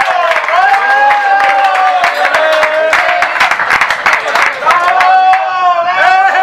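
A small group clapping, with voices raised over it in long drawn-out calls.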